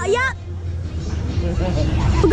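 People's voices: a short burst of talk at the start, then fainter voices, over a steady low rumble.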